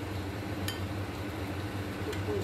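A metal spoon clinks once against a ceramic bowl while chopped tomatoes are scooped into the pan, about two-thirds of a second in, over a steady low hum.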